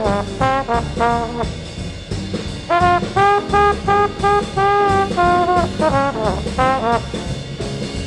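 Small jazz band playing live: a single horn solos in phrases of held and bent notes over walking bass, piano and drums.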